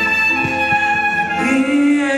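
Live band music in a slow instrumental passage, a violin carrying long held notes over the ensemble; the notes shift about a second and a half in.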